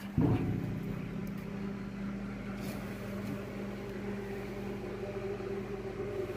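Steady machine hum: a low, even drone of a few held tones that does not change.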